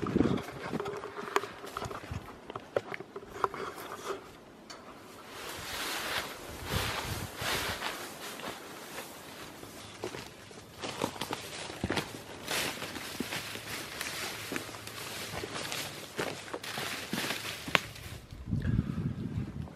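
Footsteps of people walking through bush undergrowth, uneven crunching and rustling of vegetation with scattered short clicks.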